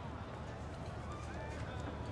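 Quiet, steady background ambience with faint distant chatter and a few light clicks.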